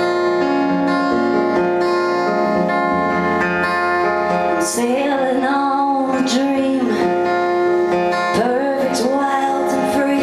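A woman singing to her own acoustic guitar. The guitar plays alone for the first few seconds, and her voice comes in about five seconds in.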